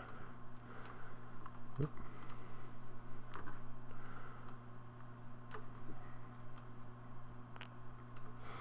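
Sharp computer mouse clicks, about eight of them spaced irregularly, as anchor points and handles are clicked and dragged in a drawing program. A steady low electrical hum runs underneath.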